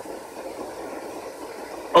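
Whiteboard marker writing on a whiteboard: faint, steady scratching over low room noise.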